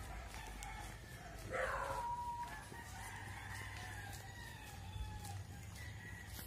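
A rooster crowing faintly: one drawn-out crow about a second and a half in, falling in pitch at its end, then a fainter, longer call.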